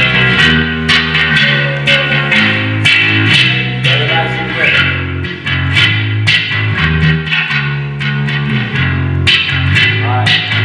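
Electric bass playing a riff of sustained low notes that step up and down in pitch, over drums keeping a steady beat of sharp hits about twice a second.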